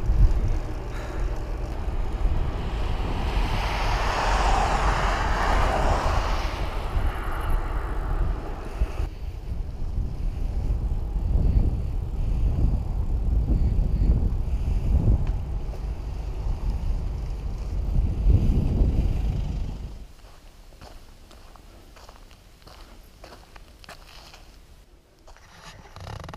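Wind buffeting the microphone of a bicycle-mounted action camera while riding, over tyre and road noise, in a steady gusty rumble with a brighter rushing swell a few seconds in. About twenty seconds in the rumble drops away, leaving quieter rolling sound with faint clicks.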